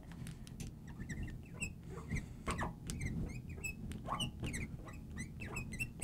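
Marker writing on a glass lightboard: a run of short, irregular squeaks and light scratches as the felt tip moves over the glass.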